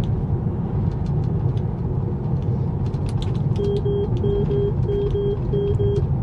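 Tesla's 'take control immediately' warning chime: short beeps in quick pairs, repeating about every 0.7 s, starting a little past halfway. Beneath it, steady road and tyre rumble in the moving car's cabin.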